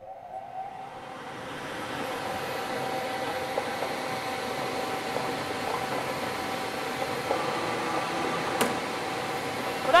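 Air-mix lottery ball machine's blower running steadily, building up over the first two seconds as the balls are mixed in the clear globe, with one sharp click near the end.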